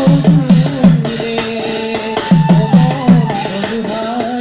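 Live folk dance music: a hand drum beats quick runs of three or four strokes that fall in pitch, under a sustained melody line.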